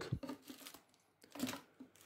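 Plastic packaging bags of fishing tackle crinkling as they are handled: a few soft rustles, the loudest about a second and a half in.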